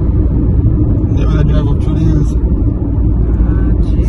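Steady low rumble of road and engine noise inside a moving car's cabin, with brief snatches of talk about a second in and near the end.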